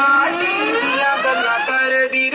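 DJ dance music at a rising build-up: a synth sweep climbs steadily in pitch, then turns choppy and stuttering near the end, before the drop.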